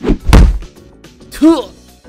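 A hard smack sound effect: a heavy thud right at the start and a second, louder hit about a third of a second later. About a second and a half in comes a short yelp with falling pitch.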